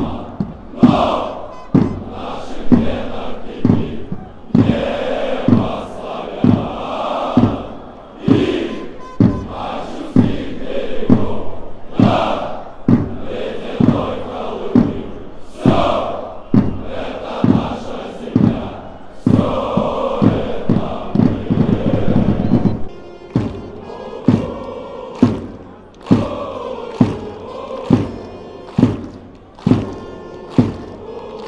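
Stadium crowd of football supporters chanting in unison, punctuated by a loud, steady beat about once a second.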